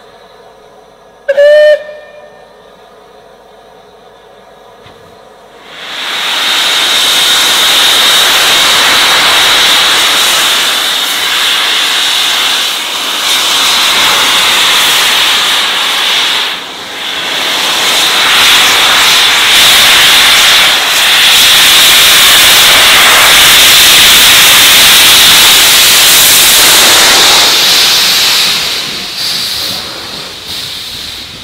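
Rebuilt Bulleid West Country class steam locomotive 34046 'Braunton' gives one short whistle. A few seconds later a loud, steady hiss of escaping steam starts and runs for over twenty seconds as the engine gets under way, with a short dip about two-thirds of the way through.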